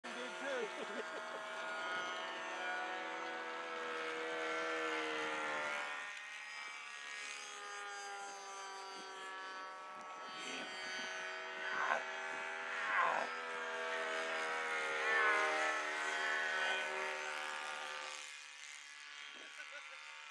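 Motors of two radio-controlled model aircraft, a Snoopy doghouse and a Fokker Dr.I triplane, droning together in flight. Their pitch slides up and down as the planes manoeuvre and pass. They fall quieter a couple of seconds before the end.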